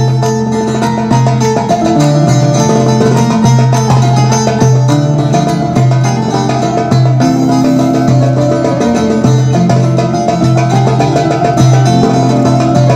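Amplified Algerian mandole played solo: a plucked melody over repeated low bass notes, without singing.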